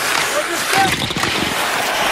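Hockey arena crowd noise during live play, with a few short knocks about a second in, typical of sticks, puck and skates on the ice.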